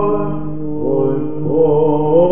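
Male cantors singing slow Byzantine chant in the first mode. The melody is held on long notes over a steady low drone and steps upward about one and a half seconds in. The old live recording sounds dull, with no high treble.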